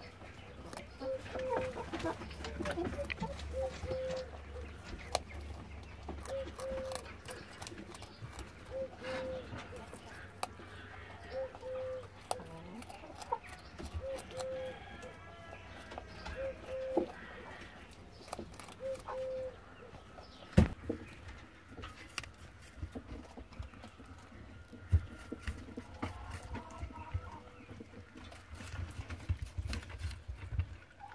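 German giant rabbit biting and chewing a raw carrot: a run of small crisp crunches with one sharper snap about two-thirds of the way through.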